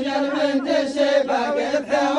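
Men's voices chanting a poem together without instruments, holding a steady low note while the melody moves above it.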